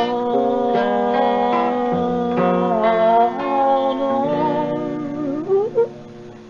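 Ambling acoustic guitar music with sustained, slightly wavering melody notes; a rising glide near the end, then the level drops away.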